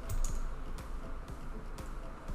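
Scattered sharp clicks of a computer mouse and keyboard, about half a dozen, over a faint steady low hum.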